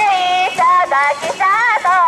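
A girl's high-pitched voice chanting through a handheld megaphone: a run of short, held calls that keep time for the mikoshi bearers.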